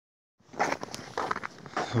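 Footsteps crunching on snow-crusted ice, about three steps half a second apart.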